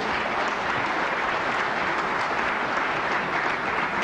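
Large audience applauding strongly, a steady, dense clapping.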